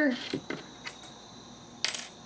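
A few faint clicks, then a short sharp crackle near the end as a torn piece of thin metal shielding foil is handled on a cutting mat. A faint, steady, high-pitched whine sounds underneath.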